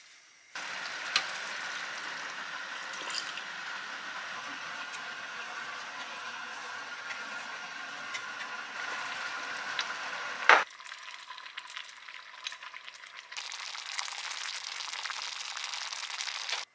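Rice porridge simmering and bubbling in an enameled cast-iron pot, a steady hiss as it is stirred with a wooden spatula. A single sharp knock comes about ten seconds in, the sound then drops for a few seconds, and the simmer grows louder again near the end.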